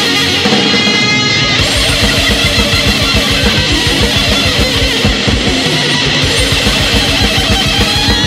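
Heavy metal recording in an instrumental passage: distorted electric guitars over fast, evenly driving drums with rapid kick-drum strokes. A short high lead-guitar line sounds in the first second or so.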